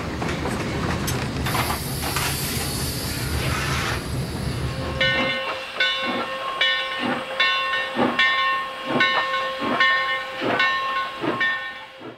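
Steam locomotive at work: a loud rush of steam hiss and rumble for the first few seconds, then regular exhaust chuffs about two a second under a long, steady steam-whistle tone.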